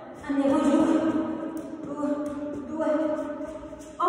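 Background music with slow, held notes that change about once a second, each starting strong and fading away.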